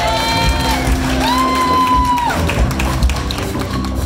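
A jazz ensemble with bass, guitar, piano and hand drums plays a groove, while a lead instrument holds two long melody notes over it.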